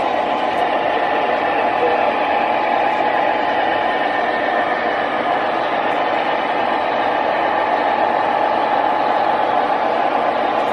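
MTH Premier O gauge BNSF diesel locomotive running on three-rail track, its Proto-Sound system playing a steady diesel engine drone through the model's speaker.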